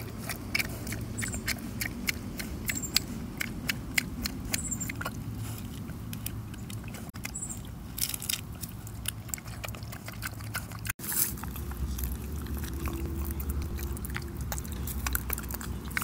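A pig biting into and chewing a soft taco with tomato and avocado, with quick irregular chomping clicks. About eleven seconds in, the sound cuts out briefly and a low rumble takes over, with only a few chomps.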